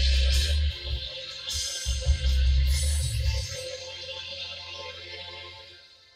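Instrumental background music with a deep bass line and sustained chords, fading out over the second half.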